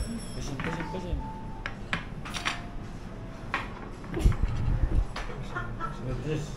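Clinks of small ceramic dishes and metal cutlery being set and handled on a table, over background chatter and music, with a few low bumps about four seconds in.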